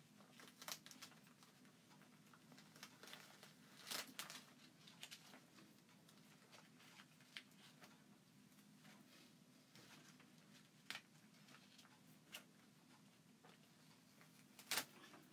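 Very quiet, faint crinkling and peeling of a thin plastic adhesive stencil transfer as it is pulled apart where it stuck to itself. A few small crackles stand out, the biggest about four seconds in, over a low room hum.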